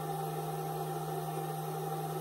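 Steady low electrical hum with a fainter higher tone over a light hiss, from a grid-tie inverter running while it feeds about 940 watts to the grid.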